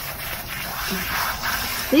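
Garden-hose spray nozzle running steadily, its water hissing into a dog's wet fur during a bath. A voice starts just at the end.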